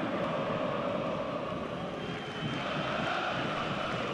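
Steady stadium ambience under a football broadcast: an even wash of crowd-like noise with no single event standing out. A faint, thin high tone runs through the second half.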